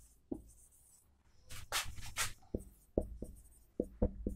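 Marker pen writing on a whiteboard: short tapping strokes, with a few longer scratchy strokes about one and a half to two seconds in.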